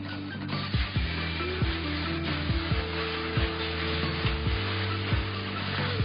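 Background music with bass notes and a steady beat, over a steady hiss of hands rubbing shampoo lather into wet hair that starts about half a second in.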